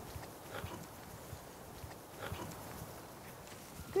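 Faint footsteps and shuffling of a small flock of sheep and a person walking along a grassy track, with a couple of soft brief sounds about half a second and two seconds in.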